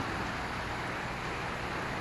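Steady rain falling on a wet concrete driveway and street, an even hiss.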